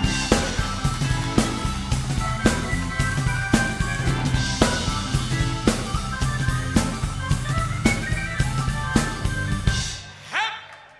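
Live rock band playing an intro: a drum kit with a heavy hit about once a second, bass underneath, and a high recorder melody on top. The music breaks off abruptly at the end.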